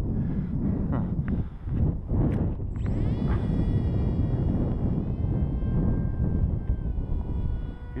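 Wing Wing Z-84 flying wing's electric motor and propeller winding up to a high whine about three seconds in, as the plane is launched. The whine then holds steady, dropping slightly in pitch twice, over heavy wind noise on the microphone.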